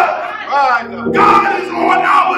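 A man's loud, shouted preaching in three or four short phrases, over held chords from an instrument playing underneath.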